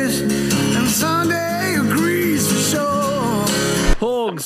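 A male singer holds long notes with vibrato over acoustic guitar in a recorded pop-folk song. The music cuts off abruptly near the end.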